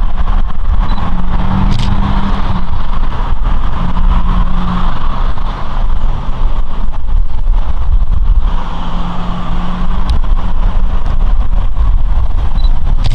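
Road traffic: cars passing one after another, their engine and tyre noise swelling and fading three times, over a steady low rumble.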